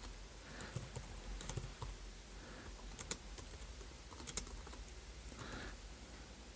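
Typing on a computer keyboard: faint, irregular key clicks, a few of them sharper than the rest.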